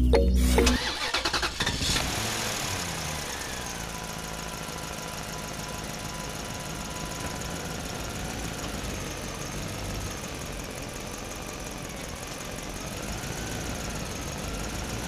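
Steady engine-like running of a toy tractor, with a slowly wavering whine, starting about two seconds in as background music stops.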